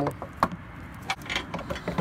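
Plastic headlight assembly knocking and clicking against the truck's front end as it is pushed into place, a few sharp taps, the loudest about half a second in.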